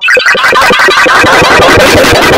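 Harsh, heavily clipped electronic distortion cuts in suddenly at full volume and pulses rapidly. A voice shouting "No!" and laughing is buried in it.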